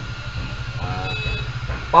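A low, steady background rumble, with a brief faint voice about a second in.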